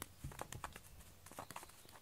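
Scattered light taps and soft thuds on a foam puzzle-mat floor during play with a fried-shrimp cat wand toy. There are a few in the first half-second and another pair about one and a half seconds in.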